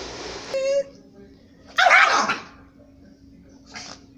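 Small dog guarding its food, snarling and barking: a short high yelp about half a second in, then a loud harsh bark falling in pitch about two seconds in, and a brief huff near the end.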